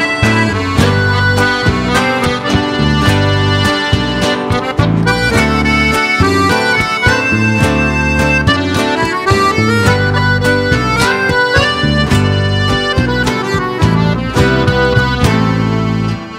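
Button accordion playing an instrumental solo in quick runs of notes over a rhythmic bass guitar and guitar accompaniment.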